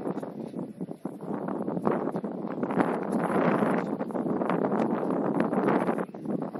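Wind buffeting the camera microphone, a rough, fluctuating rumble with crackles.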